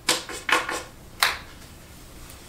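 Pool balls clicking and knocking together as they are handled: about five sharp clacks in just over a second, then quiet.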